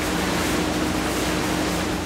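Steady industrial din of recycling-plant sorting machinery: an even, hiss-like rush with a low hum underneath, holding level throughout.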